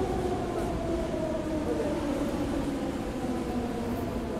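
Metro train pulling into an underground station: a steady rumble with a whine that falls slowly in pitch as the train slows.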